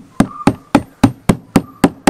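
Hand hammer striking a cut scrap tyre in a steady run of sharp blows, about four a second, some eight strikes in all.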